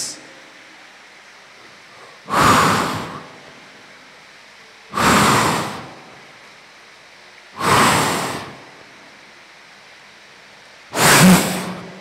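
Four forceful breaths blown into a microphone, each about a second long and a few seconds apart, sharp at the start and trailing off; the last carries a little voice.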